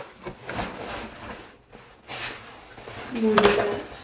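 Rustling and light knocks of a fabric cheer bag being held open and packed. A short voice sound comes about three seconds in.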